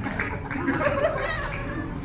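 Indistinct human voices, the talk of people close by.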